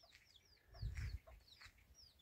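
Young chicks peeping: a steady run of short, high, falling peeps at about five a second, with a brief low thump about a second in.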